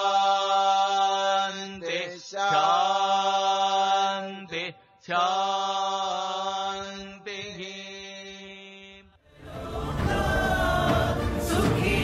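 Vedic chant closing in four long, held phrases on one steady pitch, ending about nine seconds in. Music then starts.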